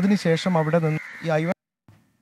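A man's voice with a wavering pitch that stops abruptly about a second and a half in, leaving silence.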